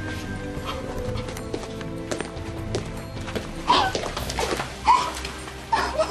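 A young woman sobbing, three loud wailing sobs in the second half that each fall in pitch, over soft background music with sustained notes.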